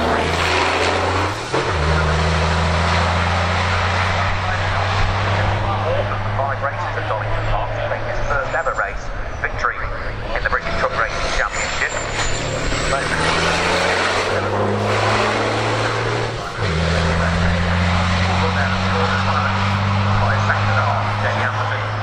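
Race trucks' diesel engines running on the circuit: a loud, steady low drone that jumps up in pitch abruptly twice, about a second and a half in and again near the end, over a dense rushing noise.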